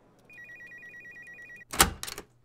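Electronic telephone ringing: a rapid two-tone trill that warbles for about a second and a half, then stops abruptly. It is followed at once by a loud thump and a few small clicks.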